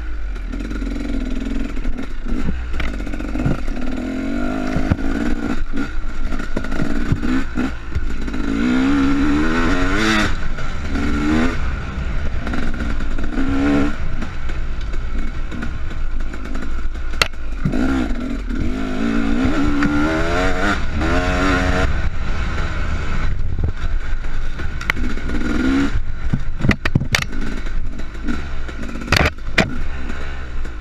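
2015 KTM 250 SX two-stroke dirt bike engine, heard from a handlebar-mounted camera, revving up and dropping off again and again as the bike is ridden. Wind rumble on the microphone runs underneath, with a few sharp knocks from bumps, two of them in the second half.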